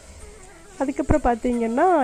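A woman's voice speaking Tamil narration, starting after a short pause of under a second.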